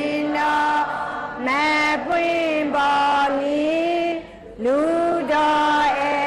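A single high voice singing a melodic Buddhist devotional chant in long held notes that slide up and down, phrase after phrase with short breaths between.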